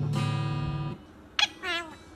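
Acoustic guitar music holding a chord that dies away about a second in. Near the end, after a sharp click, a male Eclectus parrot gives a short wavering call that falls in pitch.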